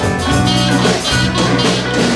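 Live rock band playing an instrumental break, with electric guitars, bass guitar and drum kit.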